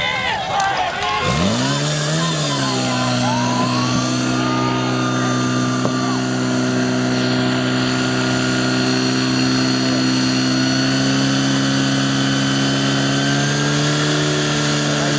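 Portable fire pump engine catching about a second in, revving up and then held at a steady high speed, pumping water through the attack hoses.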